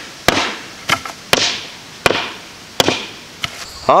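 Repeated chopping blows while a squirrel is being cleaned: about six sharp strikes, roughly one every two-thirds of a second, each followed by a brief rasp. The blows are the hacking needed when no sharp knife is used.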